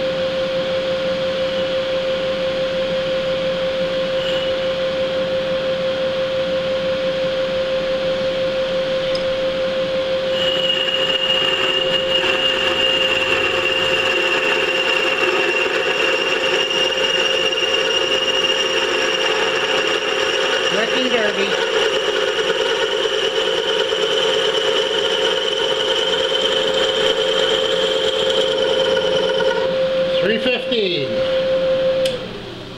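Vertical milling machine spindle running with a steady whine. About ten seconds in, a half-inch end mill begins cutting into a lathe chuck body, adding a high-pitched steady squeal and raising the level.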